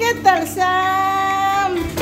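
Background music: a high sung note, held steady for about a second, over a steady accompaniment.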